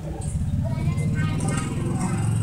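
A motor vehicle engine running steadily with a low hum, with voices talking in the background.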